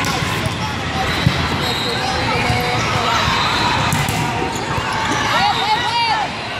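Volleyball hall ambience: balls being struck and bouncing, with one sharp hit about a second in, over a babble of voices from many courts. Short squeaks, typical of sneakers on the sport court, gather near the end as a rally starts.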